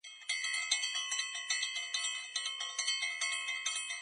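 Outro jingle of bright bell-like chimes, struck in quick, even succession several times a second, each tone ringing on under the next.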